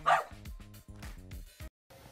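A small dog barks once at the start, the last of a short run of barks, over background music with a steady beat. The music cuts off suddenly near the end.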